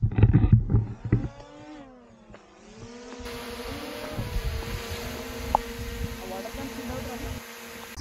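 Small quadcopter drone (DJI Mini 2) flying close by, its propellers whining. The whine drops in pitch over about a second and then holds steady. A loud rumble of wind or handling on the microphone comes in the first second.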